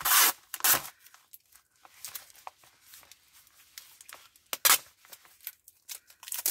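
Clear Tesafilm adhesive tape being peeled off a stiff plastic sleeve. There are short ripping sounds twice in the first second and again a little past the middle, with faint crinkling of the plastic between.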